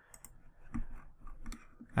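A few faint computer keyboard clicks, spaced apart, as a point's coordinates are typed in.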